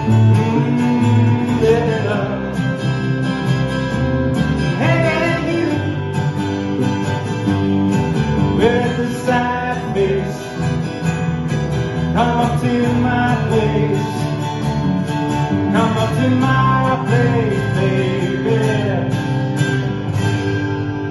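Live acoustic band music: two acoustic guitars strummed while a man sings into a microphone.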